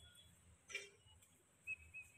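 Near silence, broken by one brief faint sound about three-quarters of a second in and a thin, high whistle-like tone that starts near the end.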